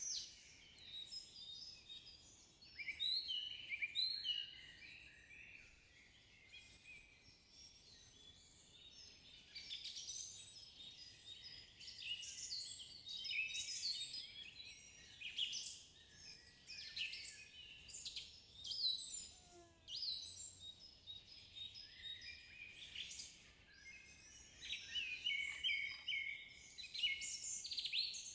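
Faint forest birdsong: several small birds chirping and trilling in short bouts, with a lull of a few seconds near the start.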